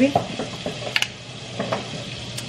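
Food sizzling in a frying pan on the stove, with a sharp click about a second in as a plastic jar's screw lid is twisted off.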